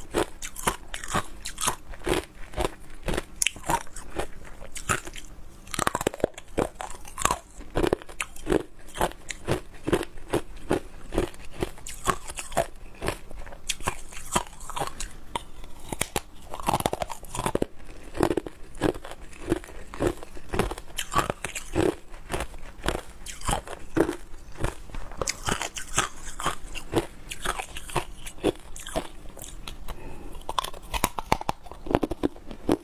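Pieces of frosty ice being bitten and crunched between the teeth close to the microphone, then chewed: a rapid, continuous run of sharp cracks and crunches.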